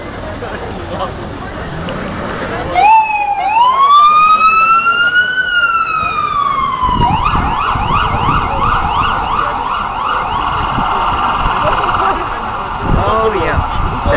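Ambulance siren passing close by: a slow wail that starts about three seconds in, rises and falls, then switches to a fast yelp of about four sweeps a second and then a quicker warble before stopping near the end. Busy street traffic and crowd noise run underneath.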